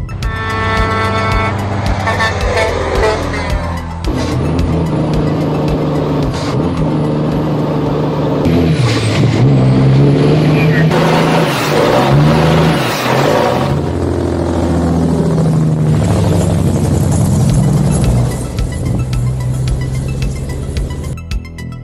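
A heavy diesel truck engine revving, its pitch rising and falling several times, with a high whistle that sweeps up and down, mixed over electronic music.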